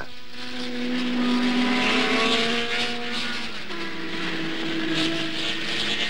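Racing car engines running at speed. One engine note sinks slowly in pitch over the first three seconds, then a second, higher note sounds a second later, over a steady hiss.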